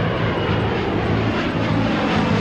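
Jet airliner engine noise, a steady, dense rush, with low sustained music tones running underneath.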